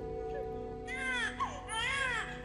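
A woman sobbing on stage in high, wailing cries, in two spells about a second in and near the end, over steady held notes of the cải lương accompaniment.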